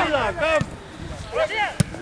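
Football players shouting "Kom!" to each other, and near the end a single sharp thud of the ball being kicked.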